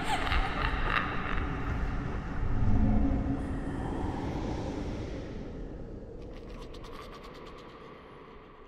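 Outro sound effects of an animated logo sequence: a dense mechanical, creaking texture that swells a little under three seconds in, then fades away steadily, with faint fine clicks near the end.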